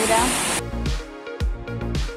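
Rushing of a small waterfall under a voice, which is cut off about half a second in by background music with steady held notes and low beats about a second apart.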